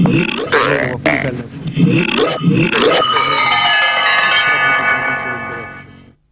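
Title jingle of a TV programme's animated intro: quirky voice-like sounds sliding up and down in pitch, then a held chord from about halfway that fades out near the end.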